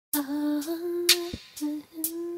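A woman humming long held notes at a steady pitch, pausing briefly and picking up again, over sharp clicks about twice a second that keep the beat.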